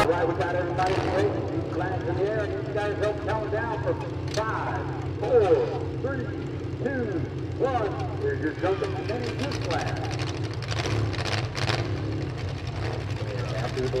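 Several demolition derby car engines idling together at the line-up, a steady low hum, with the voices of a crowd chattering and calling over it.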